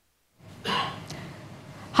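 A moment of dead silence, then a short breathy gasp-like exhalation over the steady background noise of a crowded room.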